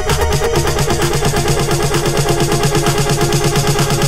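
Progressive electro house track at 130 bpm: a rapid, evenly pulsing synth pattern over sustained tones, with the deep bass easing back shortly after the start.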